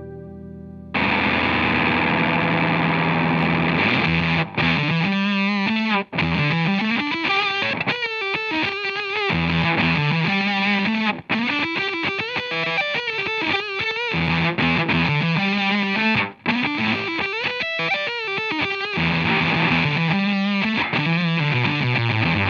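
Electric guitar played through a Boss ME-80 multi-effects on a distorted amp model: a riff of low chugging notes and chords that starts about a second in, broken by a few very short stops.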